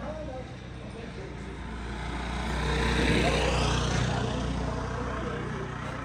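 A motor vehicle's engine passing close by: a steady low engine hum that swells to a peak about halfway through and then fades, with voices in the background.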